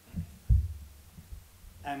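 Low thumps and rumble from a gooseneck table microphone being handled and repositioned, the loudest thump about half a second in. A man starts speaking into it near the end.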